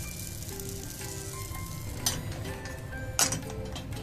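Hamburger patty and bread sizzling inside a single-slice hot sandwich maker over a gas burner. Two short knocks of the metal maker being handled come about two seconds in and just after three seconds.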